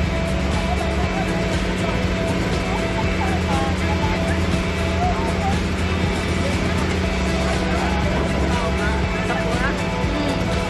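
Outrigger boat's engine running with a steady low drone, with music and voices over it.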